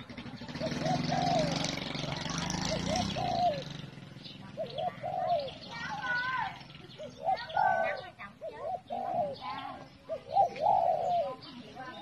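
A dove cooing over and over in short, arched, repeated notes, with other higher-pitched bird calls in between. A rushing noise runs under the first few seconds.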